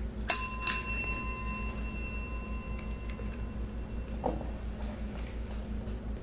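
Chrome desk service bell struck twice in quick succession by a cat's paw, ringing out and fading away over about two seconds.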